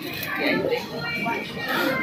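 Indistinct talking that the recogniser could not make out, with faint music underneath.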